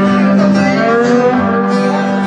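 Live band playing an instrumental passage: strummed acoustic guitars with a lap steel guitar sliding between notes over a steady low note.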